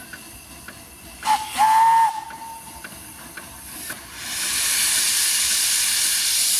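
Miniature steam locomotive's whistle: a short toot about a second in, then a steady single note of about half a second. About four seconds in a loud, steady hiss of steam starts from the open cylinder drain cocks as the engine gets ready to move off.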